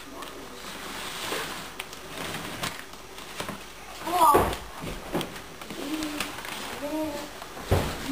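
Low, indistinct voices with scattered knocks and bumps as things are shifted about under a desk. The loudest moment, about halfway through, is a short sound that wavers up and down in pitch.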